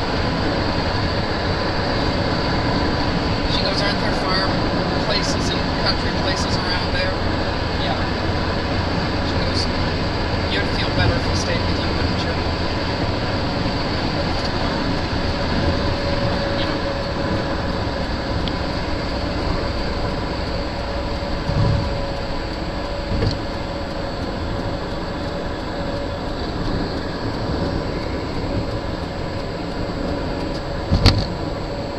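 Steady road and engine noise heard inside a moving car at highway speed, with a faint steady hum and a few light clicks in the first dozen seconds.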